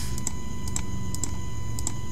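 A handful of light, scattered computer mouse clicks as buttons are pressed on a calculator emulator, some coming in quick pairs, over a steady electrical hum.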